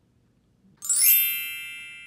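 A bright, high chime strikes about a second in and rings away over the following second, with many shimmering tones at once, like a reveal sound effect.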